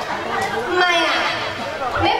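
Speech with crowd chatter around it; several voices talking at once, no music playing.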